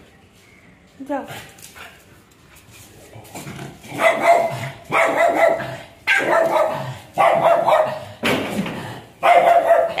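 Dog barking in a steady series, about one bark a second, starting about four seconds in.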